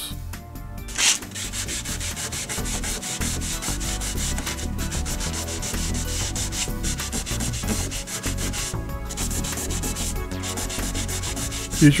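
80-grit foam sanding sponge rubbed back and forth by hand on a painted car bumper, feathering the edge of chipped paint flat. Quick, steady rasping strokes that pick up about a second in.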